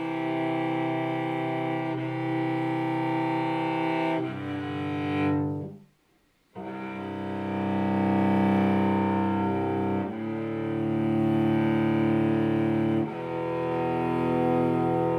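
Cello bowed in slow, long held notes, each lasting about two to four seconds, with a brief break in the sound about six seconds in.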